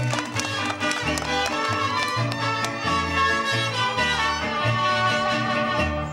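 A live band playing an instrumental passage of Latin American music, with a steady bass line stepping from note to note under held melody lines.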